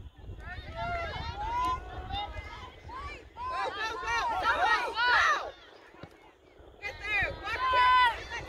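Several voices of players and spectators calling out across a soccer field, overlapping and loudest a little past the middle, with a short lull just after. A low rumble of wind on the microphone runs under them, dropping out during the lull.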